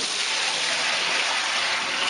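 Thick hot wort poured in a steady stream from a stainless steel pot into a plastic fermenter bucket, splashing. The pour begins abruptly.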